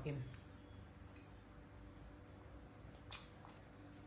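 Crickets chirping faintly and steadily, a high, evenly pulsing tone. A single short click sounds about three seconds in.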